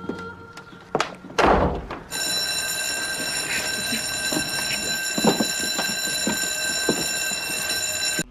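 A few knocks and a heavy, low thud, then a steady ringing tone of several high pitches held for about six seconds, with soft knocks scattered over it.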